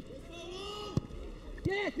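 Men's voices calling out over football-match crowd noise, with two sharp thuds of a football being kicked, one at the start and one about a second in.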